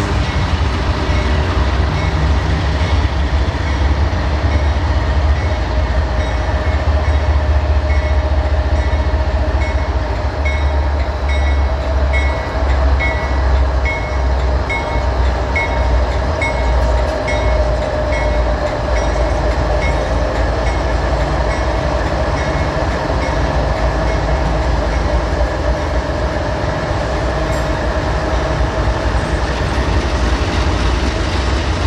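Four CSX GE diesel-electric locomotives passing close by as they pull a long mixed freight out of the yard. Their engines give a heavy, pulsing low rumble under a steady whine, with a regular light ticking through much of it.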